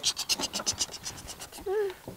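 A man's mouth sound imitating baby alligators: a rapid scratchy chatter of short clicks, about a dozen a second, then a brief pitched squeak near the end.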